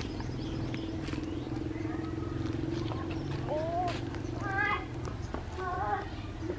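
Young macaques giving a few short, high, wavering squeals in the second half, over a steady low hum.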